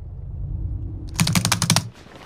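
A quick run of about ten keystrokes on a computer keyboard, a little over a second in, over a low steady hum.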